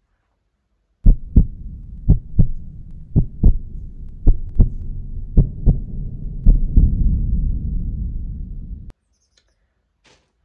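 Heartbeat sound effect: six double low thumps, about one a second, over a low rumble that swells under the last beats and then cuts off suddenly.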